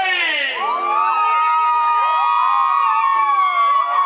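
Crowd whooping at a chamamé dance: long, high, held yells (sapucai) from several voices, with glides in pitch and music underneath.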